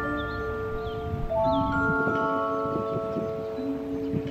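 Background music of gentle, bell-like mallet tones, with held notes stepping from pitch to pitch in a slow melody.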